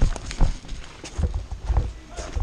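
Footsteps of a person running on dirt and gravel: an uneven series of low thuds with light scuffs and clicks.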